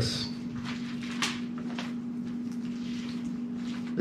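Quiet room tone in a pause: a steady low hum with one faint sharp click about a second in and a few softer ticks after it.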